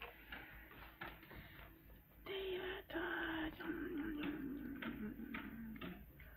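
Paper crinkling and short taps from a hand handling paper cutouts, joined about two seconds in by a person's voice holding a long note that slowly falls in pitch.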